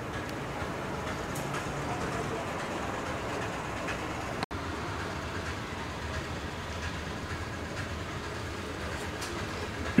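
Steady background noise of an office room with faint scratches and taps of a ballpoint pen writing on paper, briefly cut off about four and a half seconds in. A man clears his throat right at the end.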